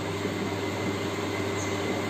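Steady background hum and hiss of room noise, with a low hum and a faint high tone held level throughout.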